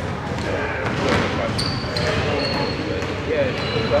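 Basketball bouncing on a hardwood gym floor, a few bounces as a player readies a free throw, under a steady chatter of voices in the gym.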